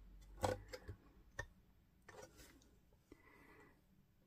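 Faint handling noise: a few light clicks and taps, the loudest about half a second in, as the plastic ruler arm of a rotary paper trimmer is moved in the hand.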